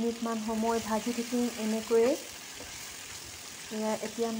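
Broiler chicken sizzling as it fries in a kadai, stirred with a spatula. A voice repeating short sung notes sits over the sizzle for the first two seconds, drops out, and comes back near the end.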